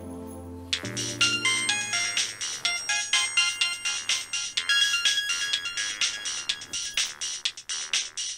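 A mobile phone ringtone: a quick, high electronic melody of short notes that starts about a second in and keeps repeating, with a soft low music drone under its start.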